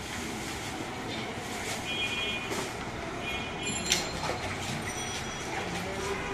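Busy street-traffic background running steadily, with two short high-pitched horn toots, one about two seconds in and one about three and a half seconds in. A sharp click comes just before the four-second mark.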